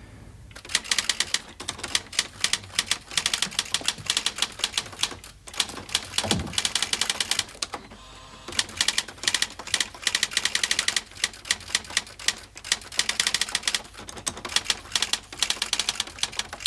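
Typewriter keys being struck in fast, continuous runs, with two short pauses about five and a half and eight seconds in.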